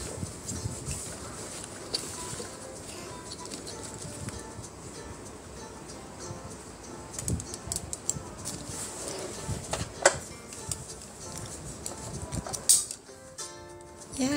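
Faint background music under the handling of a toy doll car seat's plastic harness: straps rustling and buckle parts clicking as a doll is strapped in, with a sharp click about ten seconds in.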